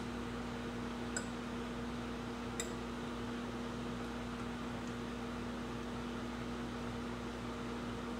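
Steady hum of a running appliance with light room noise, and two faint clicks about a second and two and a half seconds in.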